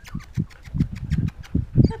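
Silken Windhound puppies scrabbling on wooden deck boards and at a person's shoes: a rapid run of small clicks and scratches with soft bumps, easing off after about a second.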